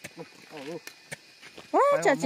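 A man speaking loudly, starting near the end, after a quieter stretch that holds only a faint short vocal sound and two light clicks.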